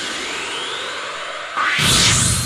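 Anime-style sound effects from a Saint Seiya pachinko machine: a shimmering tone rising in pitch, then a sudden loud rushing whoosh about a second and a half in.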